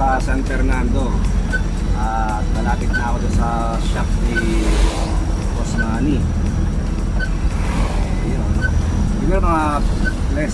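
Steady low engine and road rumble inside an old van's cabin while driving, with a man talking over it at times. A faint short tone repeats about every second and a half.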